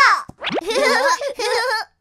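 A cartoon sound effect: a quick falling-then-rising pitch glide like a springy boing, followed by a high-pitched, wavering cartoon voice that cuts off just before the end.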